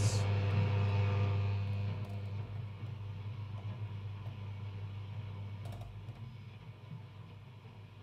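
Philips F6X95A valve radio sounding through its speaker while being tuned: a steady low hum over background hiss that fades away gradually, with a couple of faint clicks about three-quarters of the way through.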